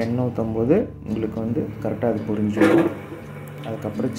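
A person talking, with a brief noisier burst about two and a half seconds in.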